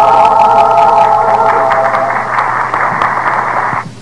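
A held final note of cantorial singing in an old, narrow-band live concert recording ends about a second and a half in. A noisy wash follows and cuts off abruptly near the end.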